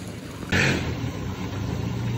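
A steady low motor hum, with a short hiss about half a second in.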